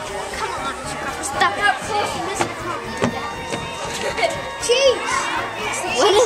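Children's voices talking and calling out, with music playing underneath.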